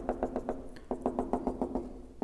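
Marker pen tip tapping on a whiteboard in a rapid run of light taps, several a second, as a dotted line is dabbed on dot by dot.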